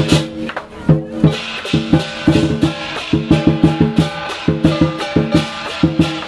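Chinese lion dance percussion: a big drum beaten in quick runs of strokes, with crashing cymbals over it. The beat breaks off briefly about half a second in, then picks up again.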